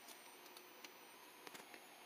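Near silence: faint room hiss with a few very faint ticks.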